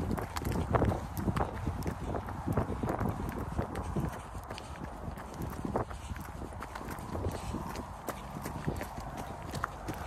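Footsteps of a person moving fast along a path, a regular series of thuds. They are heavier in the first four seconds and lighter after.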